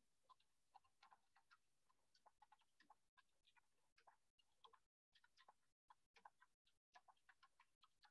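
Near silence in a remote-meeting audio feed: faint, irregular small clicks and ticks, broken by brief drop-outs to dead digital silence.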